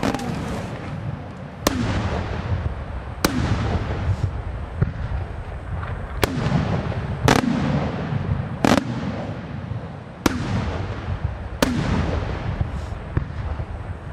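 Aerial firework shells from a Di Matteo brothers' display bursting overhead: about eight sharp bangs, one every second or two, each trailing off into a rumbling echo. A steady low rumble runs beneath them.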